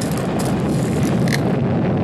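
Loud, sustained low rumbling roar of a huge explosion, a nuclear-bomb blast as dubbed onto archival test footage.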